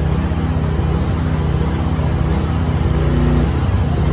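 A boom lift's engine running steadily, with a low, even hum.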